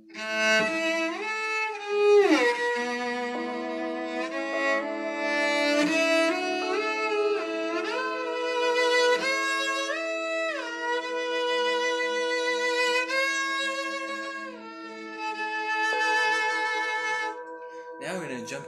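Cello bowed in a high register: a slow melody of held notes with slides between them and vibrato, over a steady lower sustained note.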